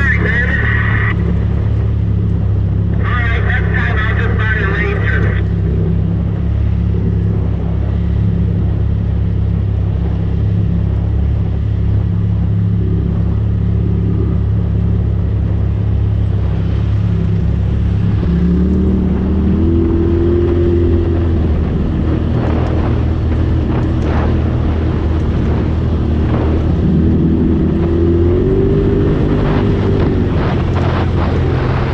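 Polaris RZR Turbo side-by-side's turbocharged twin-cylinder engine running steadily at trail speed, heard from the driver's seat. Its pitch rises as it accelerates, once about two-thirds of the way through and again near the end.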